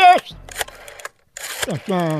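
Mostly speech: a man's voice finishing a question, then a short pause that cuts to dead silence for a moment, a brief burst of noise, and talking again near the end.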